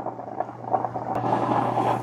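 Instant Infusion Brew Plus 12-cup drip coffee maker brewing, a steady hiss over a low hum. The hiss gets louder and brighter about halfway in, a sign that the water reservoir is nearly empty and the brew cycle is ending.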